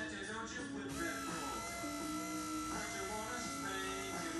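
VW Polo front wiper motor and linkage running on the bench under power, a steady electric whine setting in about a second in. The motor is working normally.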